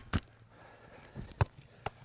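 Sharp thuds of a football being struck and caught in goalkeeper gloves: two in quick succession at the start, another about a second and a half in, and a lighter one just before the end.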